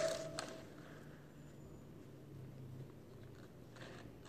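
A few soft taps of a fork dabbing paint onto paper on a tabletop: one sharp tap about half a second in and a couple of faint ones near the end, over a quiet room with a faint low hum.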